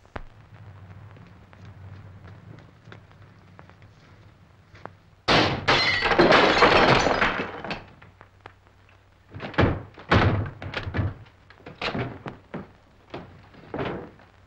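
A window's glass panes smashed in about five seconds in, the glass shattering and falling for two to three seconds, as police break into a house. Then a run of heavy thuds.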